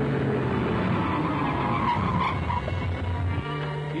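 A car driving up and pulling to a stop with its tyres skidding, under background music.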